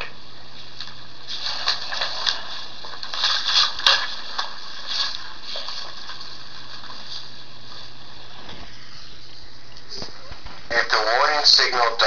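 Steady recording hiss with a low hum underneath and a couple of faint clicks, during a pause in reading aloud; a man's reading voice comes back near the end.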